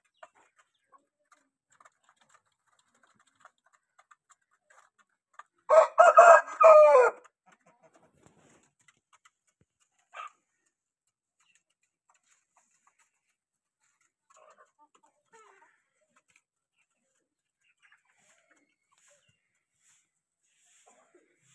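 Aseel rooster crowing once, about six seconds in: a short crow of about a second and a half, broken into a few segments. A brief faint call follows a few seconds later.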